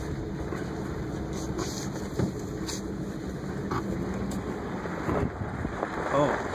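Vehicle engine running low and steady, heard from inside the cab, with a few faint knocks.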